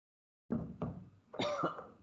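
A man coughing: a short run of about three coughs in quick succession, starting about half a second in and trailing off.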